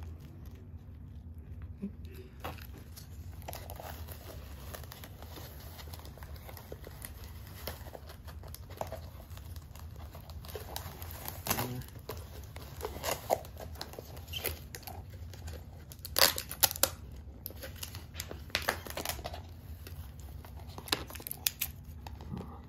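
Clear plastic deli cups, their snap-on lids and white packing wrap being handled in a cardboard box: irregular crinkling and rustling with sharp plastic clicks, busier in the second half.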